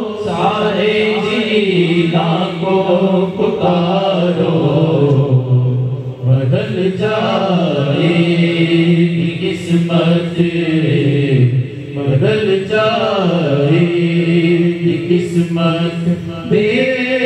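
Group of men's voices chanting an unaccompanied Sufi devotional song in unison, the melody gliding between long held notes, with short breaks for breath.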